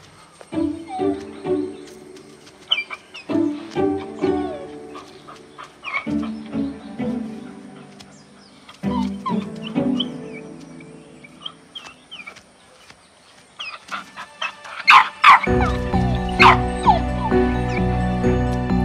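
A puppy whimpering and yipping in short high cries over sparse, soft background music. The music fills out and grows louder about three-quarters of the way in.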